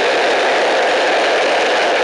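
Steel ball-bearing wheels of a wooden carrinho de rolimã rolling fast down an asphalt road: a loud, steady grinding rumble.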